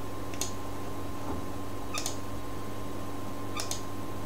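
Computer mouse clicking: a few short, sharp clicks, one near the start, one about halfway and a quick pair near the end. Under them runs a steady electrical hum and hiss.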